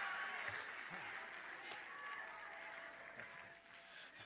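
Church congregation applauding, faint and dying away.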